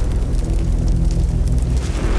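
A deep rumbling boom from a haystack fire, under sustained low music.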